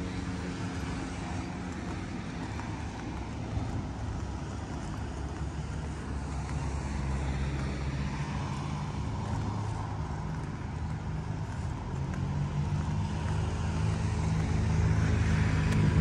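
A steady, low engine hum that grows gradually louder over the last few seconds, under general outdoor background noise.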